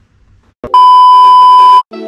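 A single loud electronic beep: one steady, high tone held for about a second, which starts with a click and cuts off suddenly.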